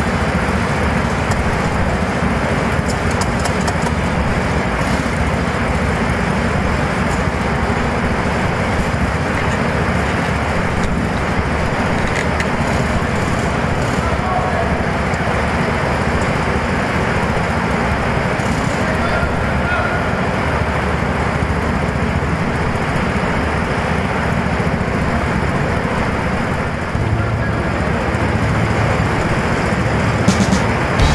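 Steady, dense din of an indoor go-kart hall, with karts running and voices mixed in; a low hum joins near the end.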